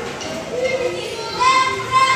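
Children's voices chattering and calling out, with no band playing.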